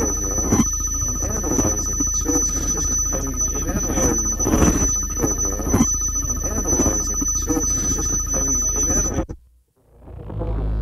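Sound collage: a chopped-up, warbling voice repeated over a steady electronic hum and a thin high whine. It cuts off suddenly near the end into a moment of silence, and a low drone starts to rise.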